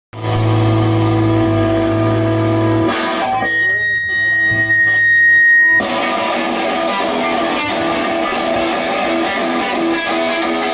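Live rock band playing: electric bass and electric guitar with drums, the bass holding low notes at first. A few seconds in, the held notes drop away and a thin, high, steady ringing tone sounds for a few seconds. Then the full band comes back in.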